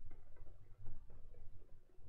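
Faint, irregular light clicks and taps from working a computer's input devices while painting digitally, over a low steady hum.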